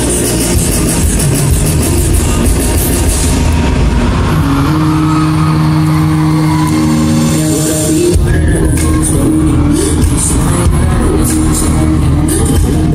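Loud dance track played over a concert sound system, recorded from the audience. Held synth notes sit in the middle, and the heavy bass beat comes back in about eight seconds in.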